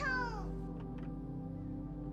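A young girl's high voice calling out once, a cry that rises then falls in pitch and fades about half a second in, over soft background music of held notes.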